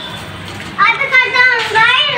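A young girl's voice: a long, drawn-out call beginning about a second in, gliding up and down in pitch.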